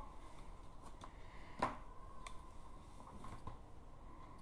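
A few faint light clicks from handling small objects over quiet room tone, the clearest about one and a half seconds in.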